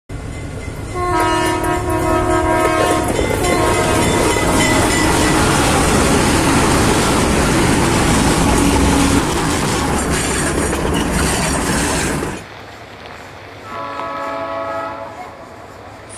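Freight train locomotive horn sounding two blasts of several tones at once, under the loud rolling noise of a passing train that cuts off suddenly about twelve seconds in; a quieter horn blast follows near the end.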